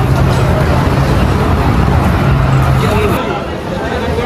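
A steady low motor hum over a busy background of voices and clatter; the hum stops about three seconds in.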